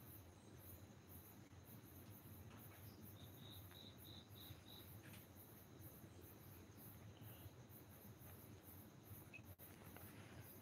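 Near silence: faint room tone with insects chirping in an even, high pulse of about two or three a second. A short run of six faint, high beeps sounds a few seconds in.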